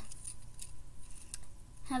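A few faint clicks and rattles of plastic Lego pieces being handled and fitted together.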